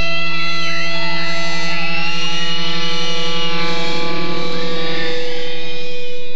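Live band holding a loud, sustained electric guitar drone through amplifiers, with wavering, gliding high feedback squeals over it.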